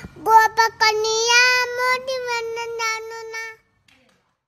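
A toddler girl singing in a high, clear voice: a few short notes, then one long held note that stops about three and a half seconds in.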